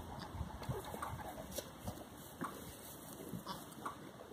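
A Kiko doe and her newborn kid shifting about in straw while the kid nurses, with several short, soft calls and small low thuds scattered through.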